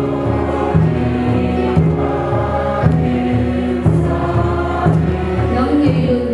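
Congregation singing a hymn together over an instrumental accompaniment whose bass note changes about once a second.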